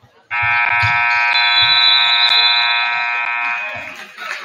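Gymnasium scoreboard horn sounding as the game clock runs out, marking the end of the third quarter: one loud, steady buzz that starts suddenly just after the start and lasts about three and a half seconds.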